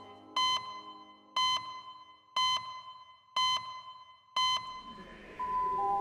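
Electronic beeps of a clock-style time caption: five short, high beeps about one a second, evenly spaced. Near the end they give way to two held tones stepping down in pitch over a low sustained note of music.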